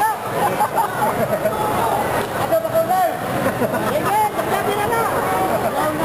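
Ringside crowd noise: many voices shouting and chattering over one another, with no single clear speaker.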